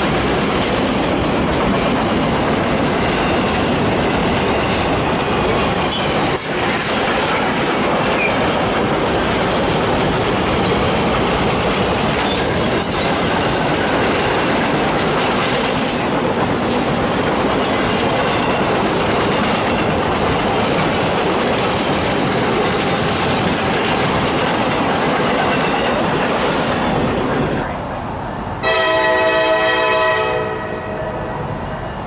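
Loaded freight flatcars rolling steadily past, steel wheels clicking over the rails. Near the end the sound cuts off and a locomotive's multi-note air horn starts sounding loudly.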